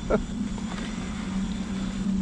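Homemade electric mobility scooter rolling along, its drive motor giving a steady low hum.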